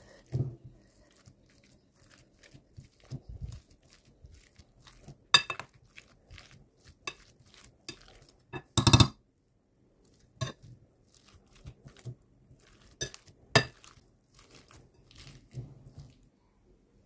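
Boiled potatoes being mashed in a glass bowl with a metal potato masher: soft mashing punctuated by irregular sharp clinks of the masher striking the glass, the loudest about five and nine seconds in.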